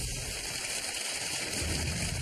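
Studio audience applauding, a steady dense clatter of clapping.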